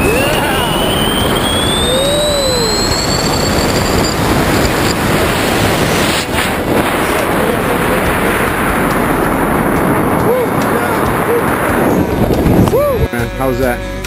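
Wind buffeting the microphone under an open tandem parachute canopy in flight, a loud steady rush with a faint whistle rising in pitch over the first few seconds and a few brief shouts. The wind noise drops away about a second before the end, as the pair land.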